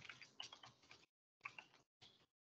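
Computer keyboard keys clicking faintly as code is typed, in two quick runs with a short pause between them.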